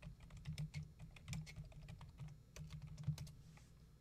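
Typing on a computer keyboard: a quick, irregular run of key clicks, with one louder keystroke a little after three seconds, after which the typing stops.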